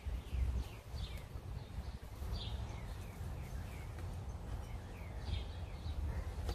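Birds chirping: a run of short, falling chirps repeated throughout, over a low steady rumble.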